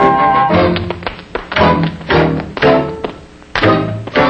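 Dance-band music backing a stage dance routine, with sharp taps and thuds of the dancers' shoes on the stage floor landing on the band's accented beats, roughly every half second after the first second.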